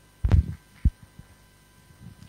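Handling noise on a live microphone: a loud, low thump about a quarter second in, then a single short knock just before the one-second mark.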